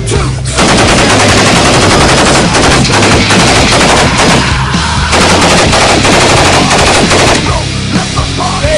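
Belt-fed machine guns firing long rapid bursts, starting about half a second in, with a short lull near the middle, and stopping shortly before the end.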